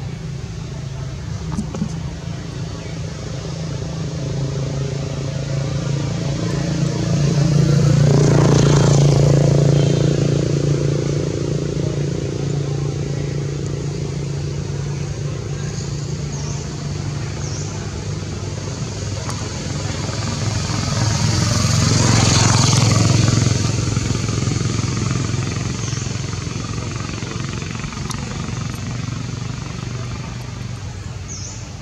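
Motor traffic: a steady engine hum, with a vehicle passing close by twice, about eight seconds in and again about twenty-two seconds in, each swelling up and fading over several seconds.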